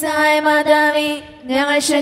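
Slow devotional hymn singing: a voice holding long, steady notes, with a short break about one and a half seconds in before the next held note.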